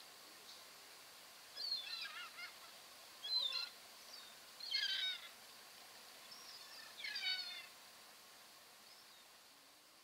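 Birds calling in four short, harsh bursts about every one and a half seconds over a quiet background with a faint steady high tone.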